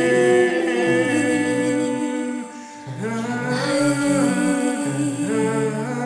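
Several voices humming and singing a mantra together in long held notes that slide from one pitch to the next. They break off briefly a little before halfway, then come back in.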